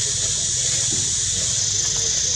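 A steady high-pitched insect chorus, with faint distant voices wavering underneath.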